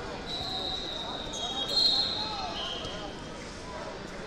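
Whistles blown in a wrestling hall: steady, high, shrill tones at a few slightly different pitches, overlapping for about two and a half seconds, loudest about two seconds in, over background chatter.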